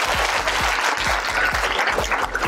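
A crowd of schoolchildren clapping, over background music with a steady beat.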